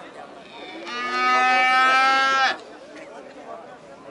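A calf bawling once: a single loud call of about a second and a half, held on one pitch and dropping away at the end.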